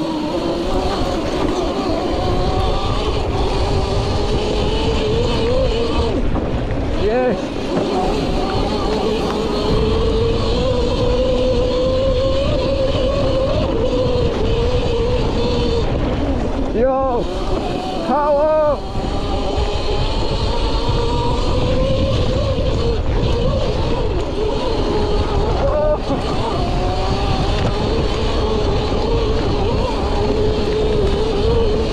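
Electric motocross bike's motor whining as it is ridden along a dirt trail, the pitch slowly rising and falling with the throttle, over a steady low rumble. A few quick up-and-down swings in pitch come about halfway through.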